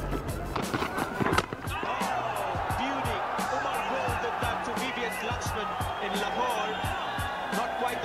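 Background music with a steady beat over broadcast cricket audio: a sharp knock of the ball hitting the stumps about a second and a half in, then a stadium crowd cheering and clamouring.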